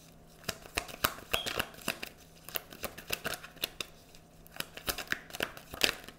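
A deck of tarot cards being shuffled by hand: a run of quick, irregular card slaps and flicks, loudest just before the end.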